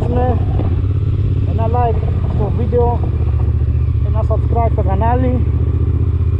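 Motorcycle engine running steadily at low revs as the bike rides slowly through a roundabout, a constant low drone with a man's voice over it.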